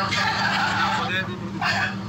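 Wordless vocal sounds from men on a live video call, warbling at first and then in short bursts, over a steady low hum.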